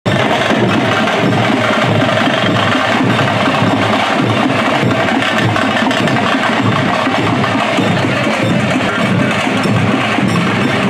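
A troupe of large barrel drums played together in continuous, steady rhythmic drumming, the sharp stick strikes clattering over a deeper drum beat.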